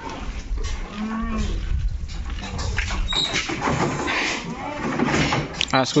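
Goats calling from a truck crate as they are unloaded, with a short, low bleat about a second in and more bleats later.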